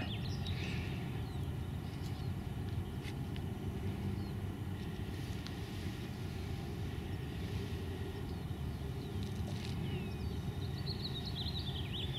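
Outdoor background: a steady low rumble, with a few faint bird chirps near the end.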